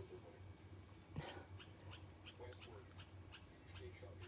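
Near silence with a low steady hum and faint, quick fingernail clicks, about three or four a second, as fingers pick at the edge of a dried peel-off gel mask on the cheek, trying to lift it.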